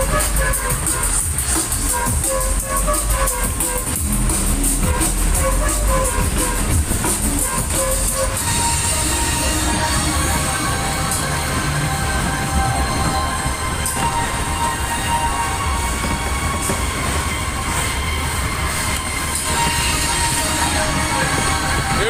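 A waltzer ride running at speed: loud fairground music plays over the steady rumble and rush of the spinning car and the platform running round on its track.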